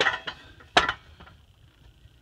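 Metal clanks of a tubular steel exhaust header being turned over by hand: a ringing clank at the very start and a sharp knock just under a second in.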